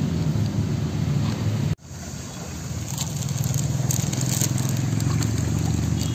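Hands splashing and scooping in a shallow stream with a plastic bag crinkling, over a steady low rumble. The sound cuts off abruptly a little under two seconds in and comes back. From about three seconds on there are light ticks and crackles.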